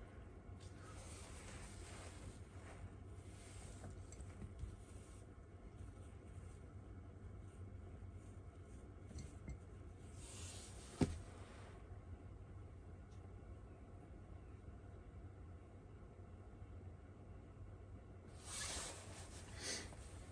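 Faint room tone with a steady low hum, broken by a few soft rustles of handling and one sharp click about eleven seconds in, as the wire electrode is moved over the glass.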